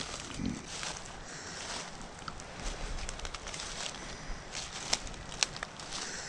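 Footsteps crunching and rustling through dry fallen leaves on a forest floor, with two sharper clicks near the end.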